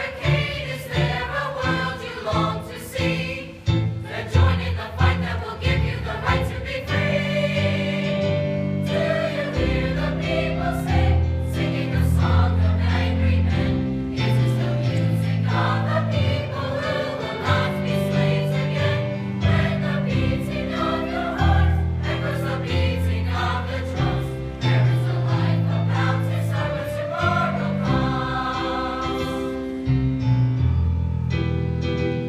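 Large mixed choir of high school students singing together in harmony over sustained low accompaniment notes.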